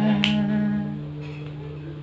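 A single sharp finger snap about a quarter second in, over the held tail of the acoustic guitar and voice, which fades about a second in.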